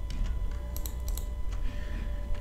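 A few quick, sharp clicks from a computer mouse and keyboard, in small clusters, over a low steady hum.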